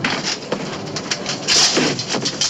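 Clattering, knocking and rustling as a potted palm tree is wrenched loose and its pot dragged on a steel deck, with one loud rustling scrape about three-quarters of the way in.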